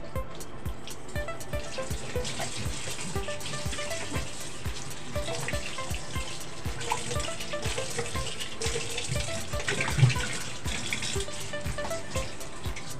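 Tap water running into a stainless steel sink as dishes are rinsed by hand, over background music with a steady beat. A single knock about ten seconds in.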